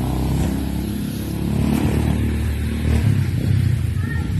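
A motor engine running steadily nearby, a low hum that grows a little louder in the second half.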